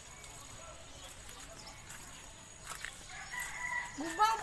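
A rooster crowing faintly near the end, one held call over a quiet background.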